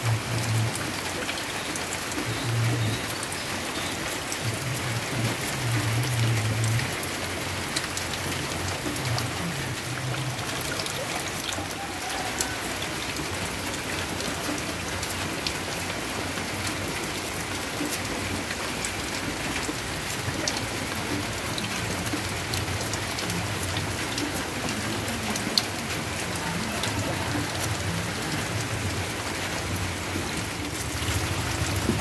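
Steady rain falling, an even hiss with scattered sharp drips. A low drone comes and goes over the first several seconds and again near the end.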